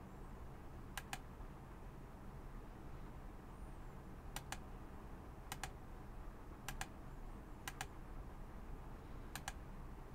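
Faint clicks of computer controls: six double clicks, each a press and release about a tenth of a second apart, spaced unevenly over a low steady hum.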